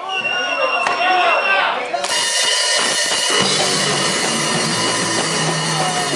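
A man's voice talks for about two seconds, then a punk rock band comes in suddenly: drum kit, electric guitars and bass guitar playing live, with the low end filling in about a second after the start.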